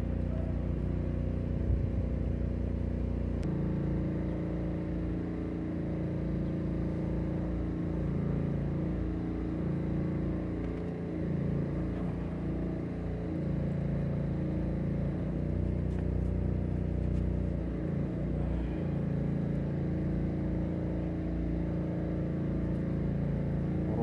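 A motor engine running steadily, a continuous low hum that shifts pitch once a few seconds in and then holds.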